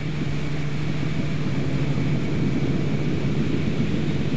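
Extra 300L's six-cylinder engine and propeller throttled back, heard from inside the cockpit as a steady low drone with rushing air. It grows slightly louder as the aircraft is pulled hard through from inverted, diving and gaining airspeed.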